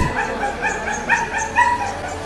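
A dog yelping and whimpering in a rapid series of short, high cries, several a second. These are the distress cries of a dog trapped on an air-conditioning unit after falling from a window.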